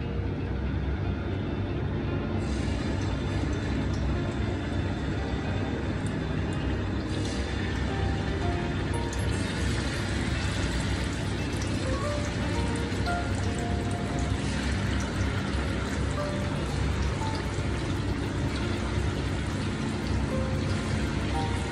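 Marinated fish pieces sizzling in hot oil in a frying pan as they are laid in one by one, the hiss filling out a few seconds in as more pieces go in, over background music.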